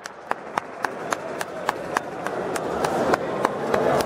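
One person clapping steadily, about three and a half claps a second, over a faint murmur of the crowd.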